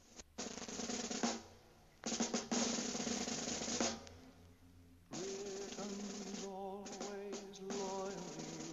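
Music with snare drum rolls: one roll of about a second, then a longer one of about two seconds. About five seconds in, a sustained held note enters over continued drumming.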